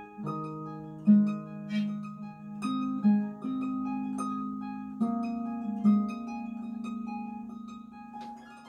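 Pedal harp played solo: plucked strings ringing on over one another, with loud low bass notes about a second in, at about three seconds and again around five and six seconds.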